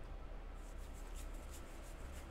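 A deck of oracle cards being leafed through by hand: a quick string of faint, crisp flicks and rustles as card slides over card during a search for one card.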